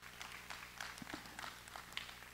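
Congregation responding faintly with scattered, irregular claps and murmurs, over a steady low hum.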